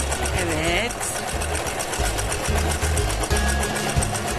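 Electric sewing machine running steadily, stitching a seam through plush fabric with a rapid, even needle rhythm.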